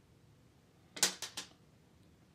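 Three quick, sharp clicks about a second in, from a small metal lash applicator (tweezers) as it is released from the lash and put down.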